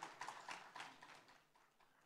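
Faint scattered hand claps, a few each second, thinning out and dying away within about a second and a half.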